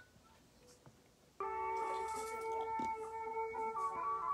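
Tibetan Buddhist ceremonial music playing through a laptop's speaker. After a quiet first second and a half, several steady, held tones start abruptly together and sustain.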